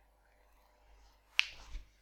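Near silence, broken about a second and a half in by a single sharp click, followed by a little faint handling noise.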